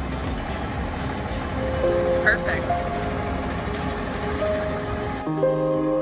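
Background music over the low rumble of a Tiffin Phaeton diesel-pusher motorhome reversing onto its pad. About five seconds in, the rumble cuts off abruptly, leaving only the music.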